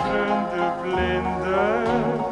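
Light orchestral accompaniment to a slow ballad playing a short instrumental phrase between sung lines, with a rising figure near the end.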